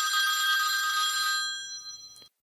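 Telephone ringing: one ring that holds steady for about a second and a half, then fades away near the end.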